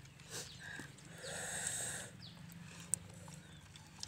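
Instant noodles being slurped from a cup: one long, noisy slurp of about a second near the middle, with a few shorter mouth noises before it and a single sharp click near the end, over a steady low hum.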